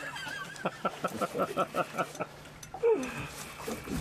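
A man laughing: a quick run of about ten short pulses, around six a second, lasting under two seconds, followed by a brief falling vocal sound about three seconds in.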